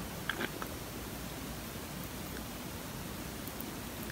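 Steady low hiss of room tone, with a few faint short clicks about a third of a second in.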